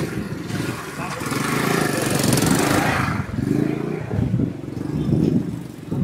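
A motorcycle engine running as the bike passes close by, growing louder to a peak about two to three seconds in and then easing off, with street voices around it.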